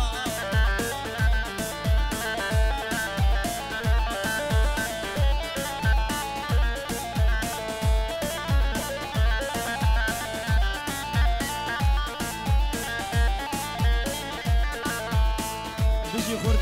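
Instrumental Kurdish wedding dance music from a live band: a fast plucked-string melody over a steady drum beat, about three beats every two seconds.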